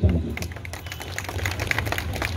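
Light, scattered hand clapping from a small audience: irregular sharp claps over a low background hum.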